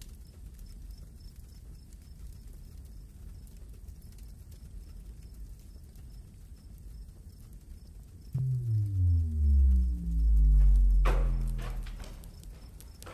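Low, steady drone of a film score. About eight seconds in, a sudden deep tone slides steeply down in pitch and then holds loud and low: a cinematic bass drop.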